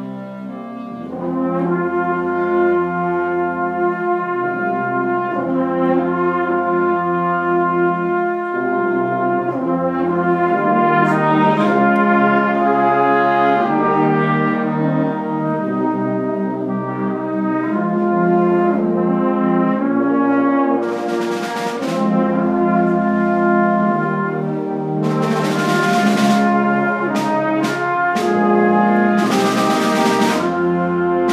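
Concert band playing a slow, flowing chordal passage from the start of the piece, with trumpets and French horn carrying the theme over the rest of the band; it grows louder about a second in, and several bright crashes sound in the second half.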